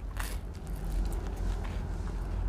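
A person biting into a slice of toast spread with vegan cream cheese: a short crunch just after the start, then chewing.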